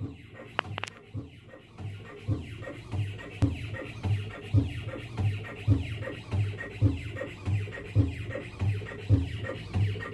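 A four-station dental chewing simulator running its cycle, with a regular low thud about once a second as the loaded styli press down on the specimens and slide. The thuds grow louder over the first few seconds, then keep an even rhythm.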